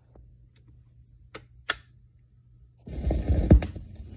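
Record player starting a 45 rpm vinyl single: two sharp mechanical clicks about a second and a half in, then near the end the stylus sets down on the spinning record and plays the lead-in groove with crackle and pops, under a low steady hum.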